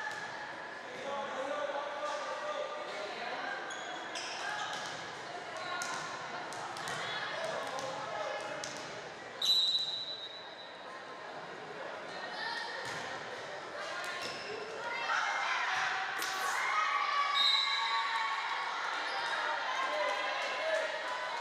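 Volleyball rally in an echoing gym: sharp slaps of the ball being served and hit, over continuous chatter and calls from players and spectators. Short, shrill referee whistle blasts come about halfway through, with the loudest moment, and again near the end.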